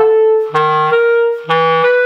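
Clarinet alternating between a low chalumeau-register note and the note a twelfth above it, switching back and forth about once a second without breaking the tone. The register key is being opened and closed to show the low note jumping up a twelfth.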